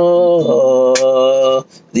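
A man singing unaccompanied in a chant-like style. He holds one long note, drops about half a second in to a lower long note, and takes a short breath break near the end.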